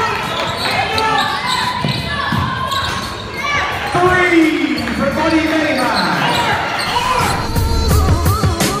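Live sound of a basketball game in a large gym: many voices shouting and cheering, with a basketball bouncing on the hardwood court. There is one long falling shout about four seconds in.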